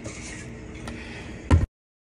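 A spatula faintly scraping cookie dough from a metal mixing bowl, then a brief thump about a second and a half in, after which the sound cuts out abruptly.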